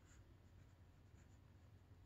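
Near silence, with the faint sound of a marker pen writing on paper.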